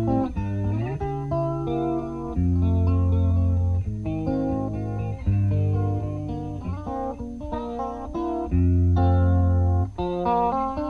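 Solo electric guitar played lap-style, a slow ballad of held chords over low sustained bass notes that change every second or two.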